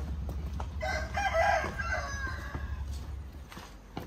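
A rooster crowing once, beginning about a second in and lasting under two seconds. Footsteps on a dirt path and a low steady rumble sit under it.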